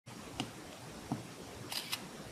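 Two short clicks, then an Android phone's screenshot sound near the end: a brief double camera-shutter click that signals the screen has been captured.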